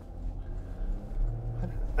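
Low, steady engine and road rumble heard inside the cabin of a moving 2013 Porsche Cayenne 3.0 V6 diesel.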